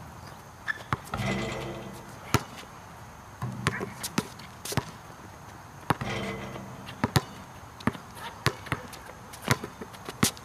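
A basketball bouncing on an outdoor hard court: about a dozen sharp, irregularly spaced bounces, with a few short stretches of indistinct voice in between.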